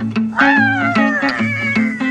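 A long, drawn-out meow starts about half a second in, falling in pitch and then holding steady. It sits over background guitar music with a repeating low plucked note pattern.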